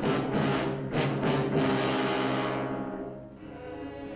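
Dramatic orchestral film score driven by timpani strikes. It dies away after about two and a half seconds to a quieter held chord.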